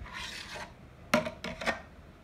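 Hollow plastic stacking-toy rings being handled: a short scraping rub, then three or four sharp clacks from about a second in as the rings knock together and onto the toy's cone.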